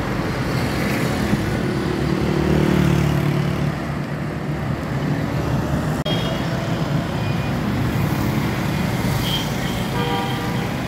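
Road traffic on a city street: steady engine and tyre noise, with one vehicle passing louder about two to three seconds in.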